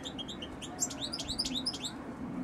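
European goldfinch singing: a quick, busy run of short, high twittering notes that starts at once and thickens through the middle.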